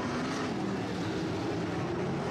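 Several sprint cars' V8 racing engines running at speed around a dirt oval, a steady blended drone with engine pitches wavering as the cars work the track.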